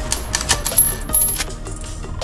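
Metallic gun-handling sound effects: a quick run of sharp clicks and clinks, some with a short ringing tone, mostly in the first second and a half, then quieter.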